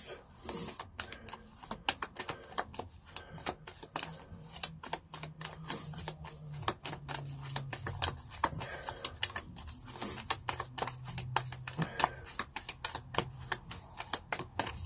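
A small deck of divination cards being shuffled by hand: a quiet run of quick, irregular clicks and slaps as the cards knock against each other.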